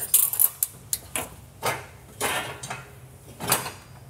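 Stainless steel exhaust tubing and a pipe clamp handled and fitted together by hand: irregular light metal clicks, knocks and scrapes, busiest in the first half second, with further knocks around two and three and a half seconds in.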